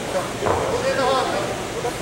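Voices calling out over a background babble of other voices, loudest about half a second to a second and a half in.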